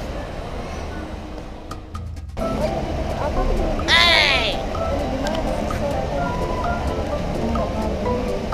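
Background music over voices. About four seconds in, a young child gives one short high-pitched squeal that rises and falls.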